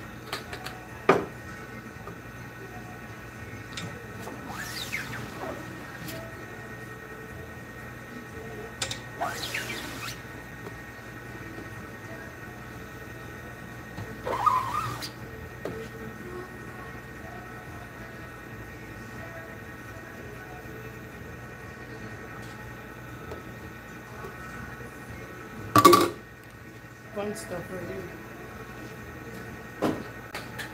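Knocks and scraping from an aluminium screen-printing frame being handled at the press: a sharp knock about a second in, scraping sounds around five, ten and fifteen seconds, and the loudest knock near 26 seconds, over a steady hum.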